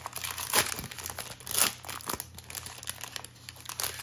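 Foil trading-card pack wrapper being torn open and crinkled by hand: a run of irregular crackles and rips, the loudest about half a second and a second and a half in.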